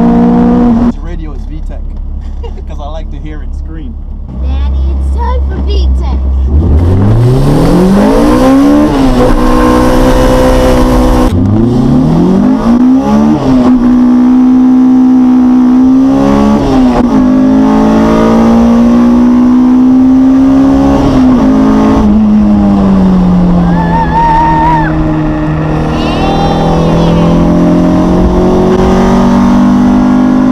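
Honda VTEC engine revving hard under acceleration, heard from inside the car's cabin. Its pitch climbs steeply twice with a drop in between, then holds high and eases lower in the last third.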